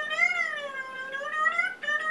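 A man's high-pitched, wordless "ooh" held for about two seconds. The pitch sags and then climbs back up, breaks off for a moment near the end, and is held again.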